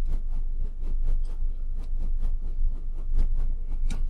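Hands working at the plastic shroud of a 3D printer's extruder carriage: a run of light, irregular clicks and taps over a steady low hum.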